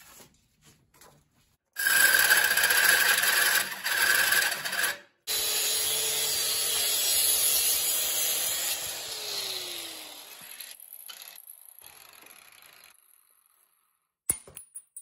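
Electric angle grinder grinding into a clamped steel plate, in two runs with a short break about five seconds in, then spinning down with a falling whine and fading out.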